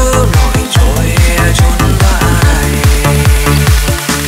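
Vinahouse electronic dance music, loud, with a heavy bass and kick drum pulsing at a fast even beat. A synth sweep glides down in pitch near the start.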